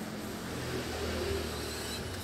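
A low steady background hum, swelling slightly about a second in and easing off.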